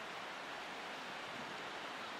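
Steady, even wash of outdoor ambience noise with no distinct events.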